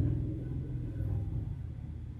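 A low, steady background rumble that fades a little over the two seconds.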